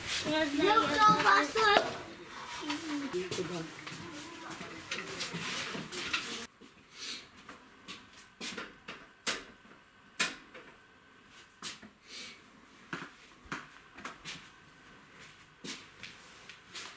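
People talking for the first few seconds, then, after an abrupt change, a quieter stretch with scattered light knocks and clicks.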